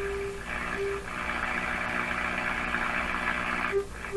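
Hallicrafters S-38 tube receiver's speaker giving steady shortwave hiss over a low hum as a signal generator is swept upward in frequency. The generator's steady test tone comes through briefly twice in the first second, and again just before the end as the sweep reaches the receiver's image response near 4.9 MHz.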